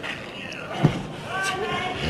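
A single heavy thud a little under a second in, a wrestler's body landing on the ring canvas, followed by voices.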